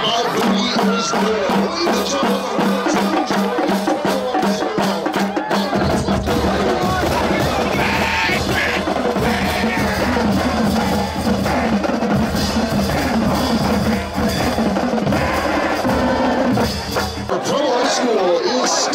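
High-school marching band drumline playing a cadence on snare, tenor and bass drums: a steady run of rapid strokes, with a deeper low drum part from about six seconds in until near the end. Crowd voices run underneath.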